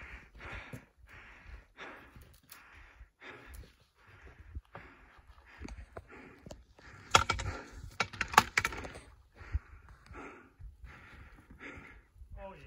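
Fast, heavy breathing close to the microphone, short puffs about twice a second, as from someone winded after a steep climb. Stones click and clatter underfoot on loose rock, with a burst of sharp knocks in the second half.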